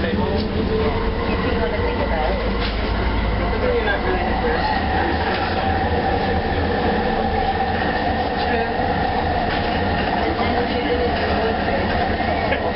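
Bombardier Mark II SkyTrain car running on its guideway: a steady whine from the linear induction motor drive, with several held tones over a continuous wheel rumble. There are a few light clicks from the track.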